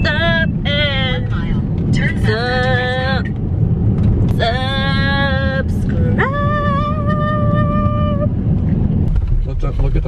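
Steady low road rumble inside a moving car's cabin. Over it, a voice sings a few long held notes, the last held for about two seconds, then stops.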